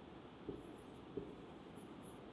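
Marker pen writing on a whiteboard: faint squeaks of the felt tip on the board, with light taps about half a second and a second in as strokes begin.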